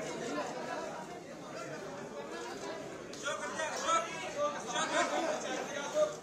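Indistinct chatter of several people talking over one another, getting livelier about halfway through.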